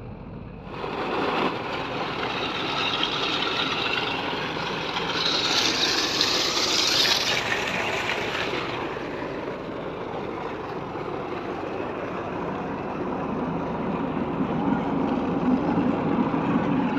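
Engine of a truck-mounted water-well drilling rig running steadily, with a brighter hiss for a couple of seconds midway.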